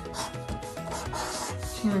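Felt-tip marker scratching across paper as a word is written, in several short strokes, over soft background music.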